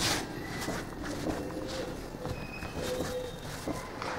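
Hands working crumbly polvorón dough of flour, shortening, margarine, sugar and egg on a floured board: soft, irregular pressing and patting sounds, slightly louder right at the start.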